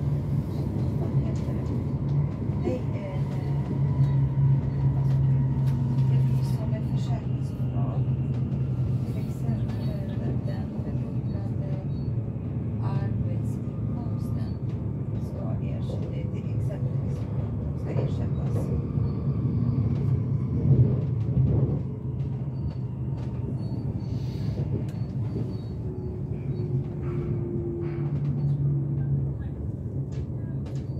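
Electric commuter train running on the rails, heard from inside the passenger car: a steady low rumble with scattered clicks from the wheels over rail joints and points, and a faint whine that slowly falls in pitch.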